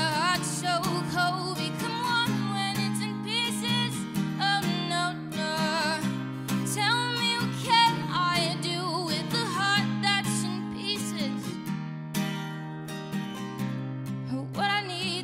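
A woman singing with a wavering vibrato over a strummed acoustic guitar, the voice easing off briefly near the end before coming back in.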